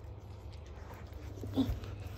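A small dog gives one brief whimper about one and a half seconds in, over a steady low rumble.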